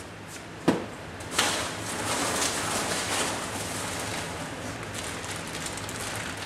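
Two sharp knocks less than a second apart, then steady rustling and crinkling of cardboard and plastic packaging as parts are rummaged out of a shipping box.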